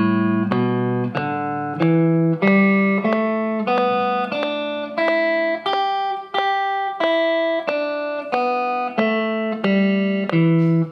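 Fender Stratocaster electric guitar picking the open-position E minor pentatonic scale one note at a time at an even pace. It climbs two octaves to a peak about six seconds in, then comes back down.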